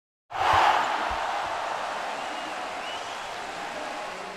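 Basketball arena crowd noise that sets in just after the start and slowly fades, with a basketball bouncing twice in the first second.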